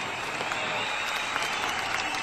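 Audience applauding: a steady, even patter of many hands clapping.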